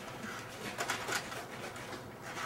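Soft wet smacking and sucking from a toddler's mouth as she eats a whole tomato, with a few small clicks around the middle.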